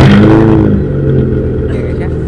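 Car engine starting: the revs flare up and drop back within the first second, then settle into a steady idle, exhausting through a makeshift water-hose tailpipe.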